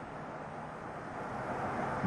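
Steady outdoor field noise from a road race: an even rushing sound with a faint low hum under it, growing slightly louder toward the end.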